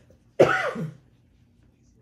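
A woman coughs once, about half a second in: a short cough from a head cold.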